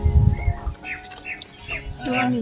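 A low boom, the loudest sound here, under held music notes that fade out in the first half second, followed by a bird chirping about five times in quick succession.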